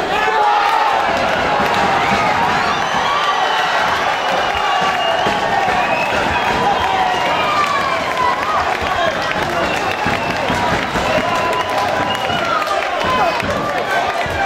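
Boxing crowd in a hall shouting and cheering, many voices overlapping in a steady din.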